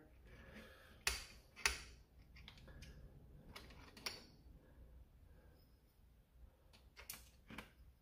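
Quiet handling of a Dart Zone MK4 foam dart blaster's plastic and metal parts as its plunger tube is seated back into the shell: a handful of sharp clicks and taps, the clearest about a second in, with faint rubbing between them.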